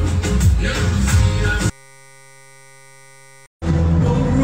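Live music with a group of large frame drums beating a dense rhythm over stage loudspeakers, cut off abruptly under two seconds in. A steady hum follows, then a moment of silence, and loud crowd sound with voices starts again near the end.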